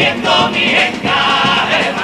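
Carnival comparsa's male chorus singing a sung passage in harmony, with Spanish guitar accompaniment.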